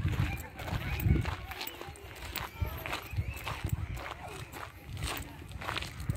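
Footsteps crunching on a gravel path at a walking pace, with faint voices in the background.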